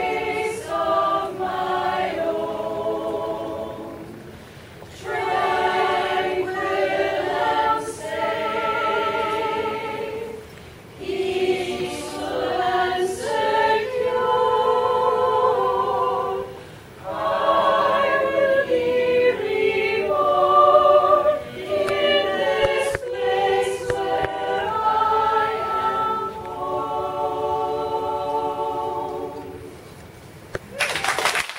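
Women's community choir singing together, phrase by phrase with brief pauses every five or six seconds; the song ends near the end.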